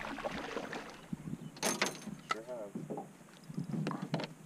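Quiet sounds of a small aluminum fishing boat on the water: a faint uneven wash with a few sharp clicks or knocks about two seconds in.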